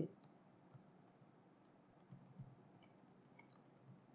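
Faint computer keyboard keystrokes, a few scattered clicks through otherwise near silence as text is typed.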